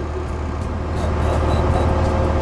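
Steady low engine drone, like a boat's engine running under way, with a faint constant tone over it.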